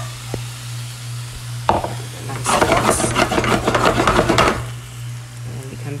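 Shrimp and vegetables sizzling in a hot skillet as they are stirred, with a knock and then a dense, loud crackling that lasts about two seconds in the middle. A steady low hum runs underneath.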